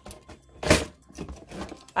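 Plastic combs in a wire-basket drawer being handled. There is one short rustling clatter about a third of the way in, with faint shuffling around it.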